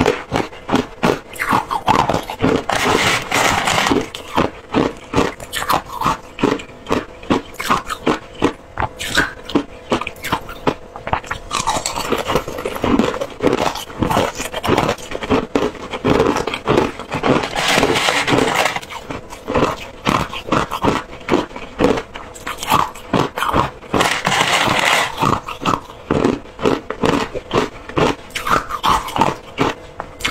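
Close-miked crunching of flavoured crushed ice being bitten and chewed, a dense run of rapid crunches, with a metal spoon scraping and scooping the ice in the plastic tub at times.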